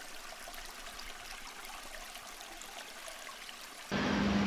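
Faint, steady rush of running water, even and without pauses, cutting off just before the end.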